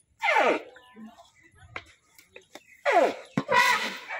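Animal cries: two loud calls that fall steeply in pitch, each about half a second long, one near the start and one about three seconds in, the second followed at once by a shorter cry.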